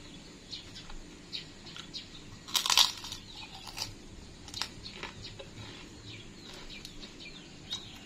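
Crisp Indonesian kerupuk crackers being bitten and chewed: one loud crunch about two and a half seconds in, then a few softer crunches.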